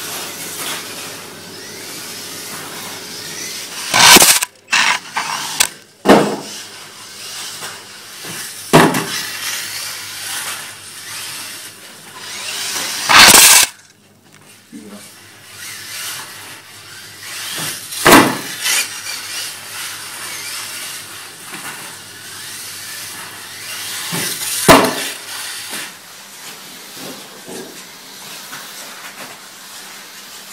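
Small electric radio-controlled buggies running on a carpet track, their motors whining, with about six loud, sharp noises as cars come close to the microphone or strike it, the loudest about 4 and 13 seconds in.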